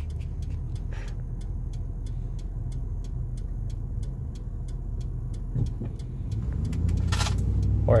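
Steady low rumble of a moving car heard from inside the cabin, with a faint, regular ticking running through it. A short breathy rush comes near the end.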